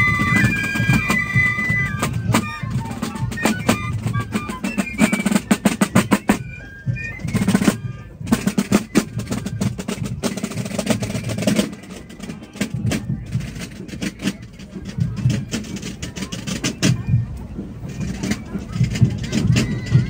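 Piccolos play a Fasnacht march at the start, with Basel drums drumming rapid strokes and rolls. The drumming carries on after the piccolos stop and thins out and grows quieter about halfway through.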